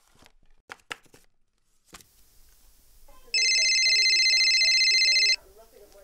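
A phone ringing: one loud electronic trill with a fast flutter, about two seconds long, starting about three seconds in. Before it, small rustles and clicks and one sharp knock about two seconds in.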